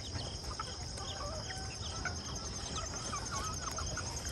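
A flock of chickens clucking and peeping softly, in many short scattered calls, while they peck at food on the ground. Behind them runs a steady high-pitched insect trill.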